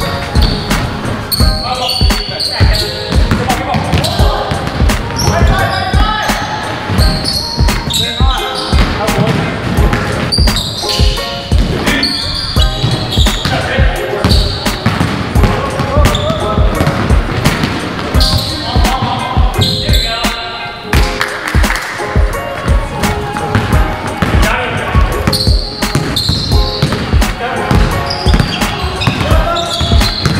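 A basketball bouncing repeatedly on a hardwood gym floor, mixed with voices and music.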